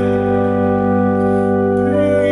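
Viscount digital church organ holding a steady sustained chord, with a slight change in the lower notes near the end.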